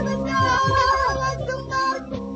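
Hassani (Sahrawi) music: a woman's voice singing long, wavering held notes over instrumental accompaniment, with occasional percussive strikes.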